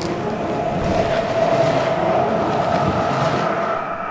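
Edited-in summoning sound effect: a steady, rough rumble with a held whine through it. It swells a little in the middle and stops at the very end.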